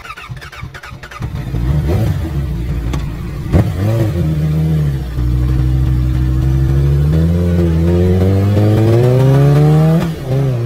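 Motorcycle engine revving in short blips, with a sharp click about three and a half seconds in. It then settles and pulls away, rising steadily in pitch over the last three seconds.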